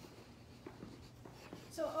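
Soft footsteps going down a staircase: a few light, scattered steps over a steady low hum.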